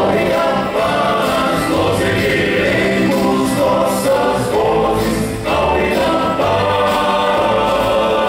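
Male vocal quartet singing a gospel hymn in harmony into handheld microphones, amplified through a PA loudspeaker.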